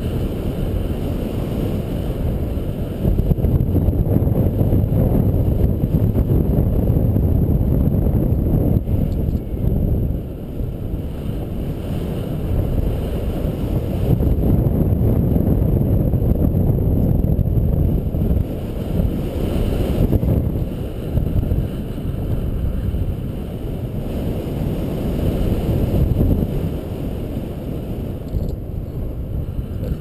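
Airflow buffeting the microphone of a paraglider pilot's camera in flight: a continuous low rumble that swells and eases.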